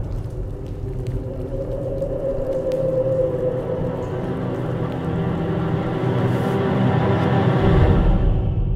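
Ominous trailer score: sustained dark tones over a low rumble, slowly building in loudness and swelling into a deep low boom near the end.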